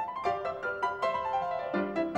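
Blüthner concert grand piano playing a quick rising run of notes that peaks and steps back down, with lower notes struck again near the end.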